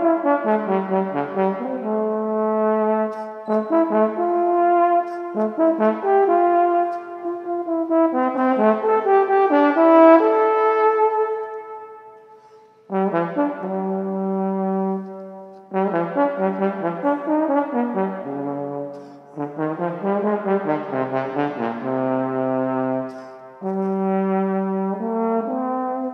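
Solo trombone playing an unaccompanied melody in phrases, with quick tongued runs of short notes. There is a brief pause about halfway, and the later phrases dip down to lower notes.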